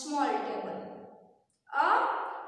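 A woman's voice speaking, with a brief pause about three-quarters of the way through before she goes on.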